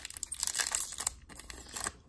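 Foil wrapper of a Topps Chrome trading card pack crinkling and tearing as it is pulled open by hand, in a run of irregular crackles with a brief pause midway.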